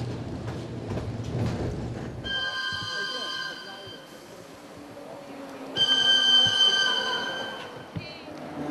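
Budapest HÉV suburban electric train: a low on-board running rumble with wheel clicks for about the first two seconds, then two long high-pitched steady tones from the approaching train, each lasting a second and a half or more, the second louder.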